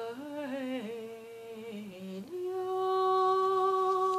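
A woman's unaccompanied voice carrying a wordless folk melody. From about two seconds in she holds one long steady note, the closing note of the song.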